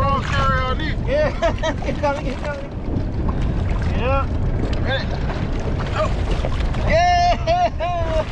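Men's voices calling back and forth between boats, partly drowned by a steady low rumble of wind on the microphone and moving water.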